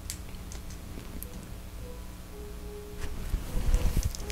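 Small clicks and handling noise of plastic Lego pieces being fitted together by hand, a little louder near the end, over quiet background music.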